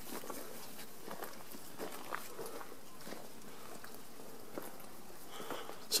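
Faint footsteps through long grass with light rustling, over a steady low outdoor hiss.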